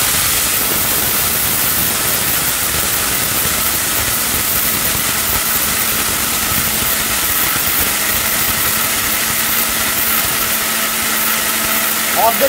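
Ricco Toofaan mixer grinder's motor running in its small stainless-steel dry jar, grinding dry lentils into gram flour (besan): a loud, steady whir with no break.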